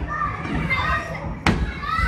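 Children playing and calling out in a busy indoor play area, with a single sharp thump about one and a half seconds in.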